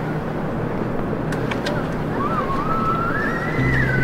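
Steady hiss of distant city traffic. A thin wavering tone rises and falls over the second half, and a low hum comes in near the end.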